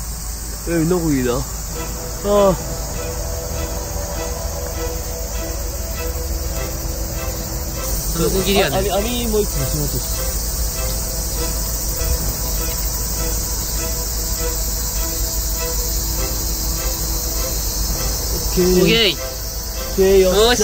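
A steady, high, shrill chorus of insects calling in the night woods, with a low rumble beneath. Brief wordless voice sounds break in about a second in, again at two and a half seconds, around eight to nine seconds and near the end.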